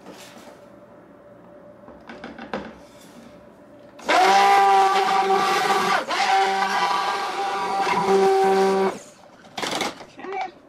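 Handheld immersion (stick) blender running in a plastic pitcher of thick soap batter, mixing in colourant: a steady motor whine that starts about four seconds in, dips briefly near six seconds, and stops about nine seconds in. A knock near the end as the blender is lifted.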